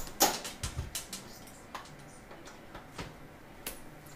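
A few light clicks and knocks, most of them in the first second, then only faint scattered ticks: objects being handled and set down.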